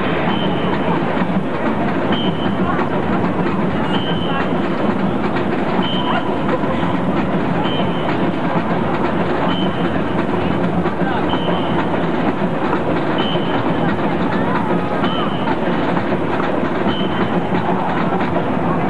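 A marching band playing in a large stadium, picked up loud and dense on a camcorder microphone, with a short high note recurring about every two seconds.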